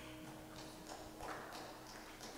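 The last note of a band's song dies away in the first second, followed by faint scattered taps, knocks and shuffling noises from musicians handling instruments and gear between songs.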